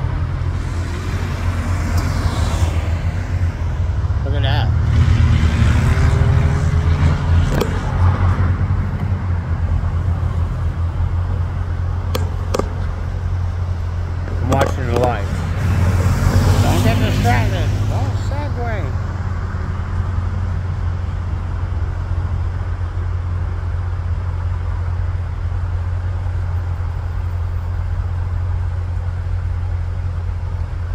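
Road traffic at an intersection, with a steady low rumble throughout. Cars swell past, loudest about five to seven seconds in and again about fifteen to eighteen seconds in, then settle into steadier traffic noise.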